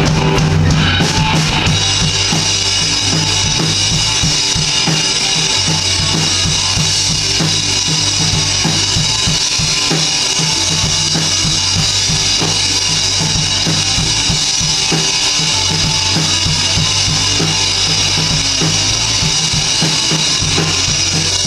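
Live rock band playing an instrumental passage: a drum kit with bass drum, snare and a steady cymbal wash drives the beat under electric guitars and bass guitar.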